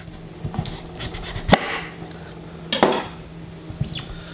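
Chef's knife cutting a peeled butternut squash in half lengthwise on a wooden cutting board, with a sharp knock about a second and a half in and a second knock near three seconds as the halves part on the board.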